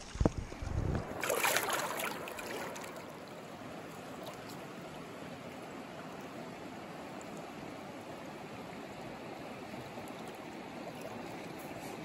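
Steady rushing of river water flowing over rocks. A few knocks and a short burst of noise come in the first two seconds, then only the even flow of water.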